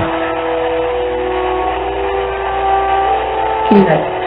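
A melodic musical tone of several steady held notes in the background of a Spirit Box session recording. The chord shifts about three seconds in, when one note drops out and a higher one comes in.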